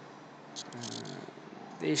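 A man's voice: a brief, low, mumbled half-word or hesitation about half a second in, over faint steady hiss, and then he starts speaking near the end.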